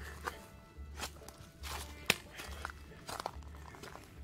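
A hiker's footsteps on a rocky trail: irregular steps and scuffs, the sharpest about two seconds in, with faint steady tones underneath.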